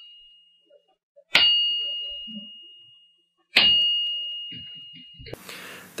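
A test part is struck and rings, twice, each strike followed by a clear high ring that dies away over about two seconds, with the fading ring of an earlier strike at the start. This ring is the part's resonance, which the resonant inspection system records to pass or fail it.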